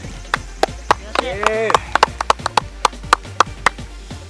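A rapid, uneven series of sharp knocks, about three to four a second, with a short cry that rises and falls in the middle, over faint background music.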